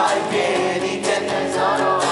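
Live unplugged rock band playing: a singing voice over strummed acoustic guitars.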